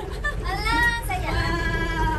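A high-pitched voice singing in long held notes that slide up and down, over a steady low rumble.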